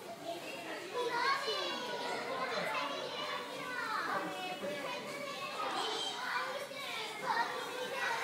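Young children talking and calling out over one another, several high voices overlapping.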